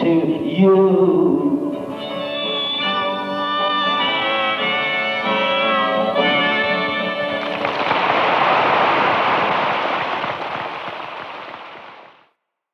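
The last bars of a solo folk song on harmonica over acoustic guitar, with held harmonica chords, on a rough audience tape recording. About seven and a half seconds in, the audience applauds, and the applause fades out near the end.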